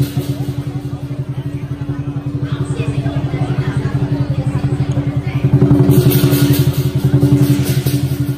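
Lion dance drum in a fast, even roll of about ten beats a second, with cymbals crashing in louder over the last couple of seconds.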